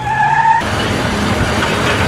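Tyres skidding: a short high squeal, then a long loud hiss of sliding rubber.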